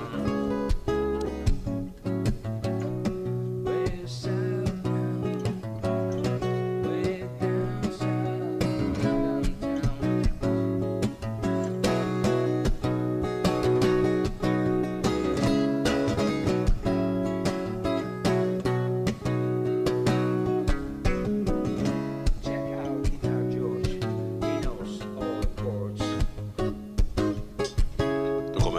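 Background music led by a strummed and plucked acoustic guitar, continuing without a break.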